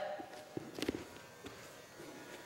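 A few faint, short knocks and scuffs of wrestlers' bodies shifting on a wrestling mat, over quiet room noise.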